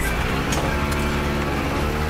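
A van's engine running with a steady low drone.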